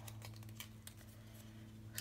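Faint handling of small cardboard pieces and a rubber band: scattered light ticks and rustles as the band is unwound to loosen it, over a steady low room hum.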